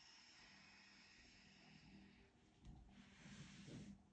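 Faint, long breath out lasting about two seconds, followed near the end by soft rustling as the body lowers onto the yoga mat.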